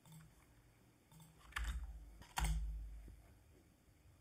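Computer mouse and keyboard clicks as a command is brought up and run in a terminal: a couple of faint ticks, then two louder clicks with a dull thump about one and a half and two and a half seconds in.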